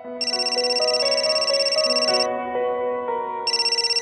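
A telephone ringing with a fast-warbling electronic ring in bursts of about two seconds: one starting just after the beginning, a second about three and a half seconds in. Soft background music plays beneath it.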